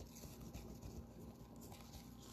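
Faint rustling and light scraping from gloved hands handling trading cards and a clear plastic toploader on a tabletop, with a small tick at the very start.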